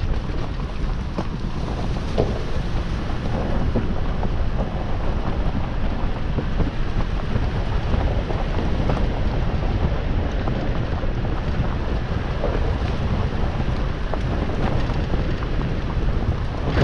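Steady low rumble and rushing noise of a 2020 Toyota 4Runner TRD Off Road driving along a rough dirt trail, with scattered small knocks from the tyres and suspension on the uneven ground.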